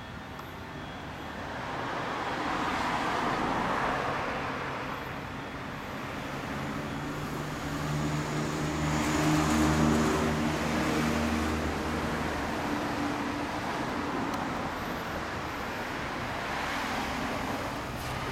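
Road traffic: vehicles pass by about three times, each one rising and fading. A steady engine hum is loudest in the middle.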